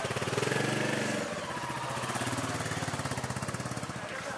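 Royal Enfield Classic 350's single-cylinder engine running with an even, rapid thump, revved up briefly about half a second in, then settling as the bike pulls away.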